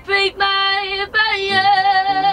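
A young woman singing a slow song with acoustic guitar accompaniment, holding several long notes with a slight waver and taking short breaks between phrases.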